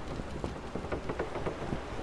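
Storm ambience: steady rain with many small scattered drop ticks over a low rumble.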